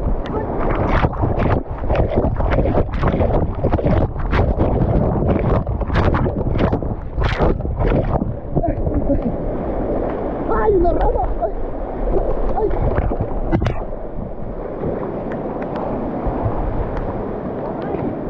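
Fast, swollen floodwater rushing and splashing around an inner tube and against the microphone, with repeated sharp splashes in the first half settling into a steadier rush.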